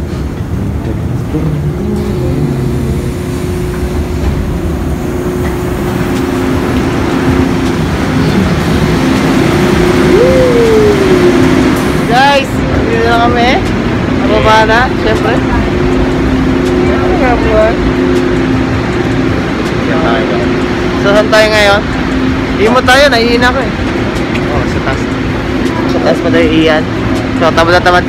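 Busy railway station noise: a steady rumble with a low hum running under it, and people's voices talking over it from about halfway through.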